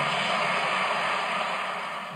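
Audience applause, a dense even patter of clapping that starts as the music stops and fades slightly toward the end, heard through a television's speaker.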